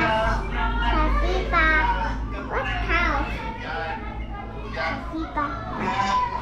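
A young child talking in a high voice, over a steady low hum.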